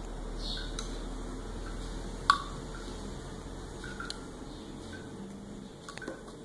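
Quiet room noise with a few light clicks, the sharpest one a little over two seconds in.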